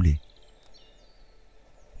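Faint songbird chirps in a nature sound bed: a short high trill, then a few quick downward chirps, over a soft steady hiss.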